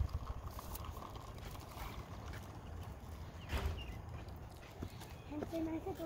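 Quiet outdoor background with a steady low rumble, one sharp tap about three and a half seconds in, and a child's short high-pitched voice near the end.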